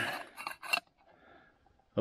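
A metal lid set onto a small aluminium camping pot: a brief scrape and a couple of light clinks in the first second, then quiet.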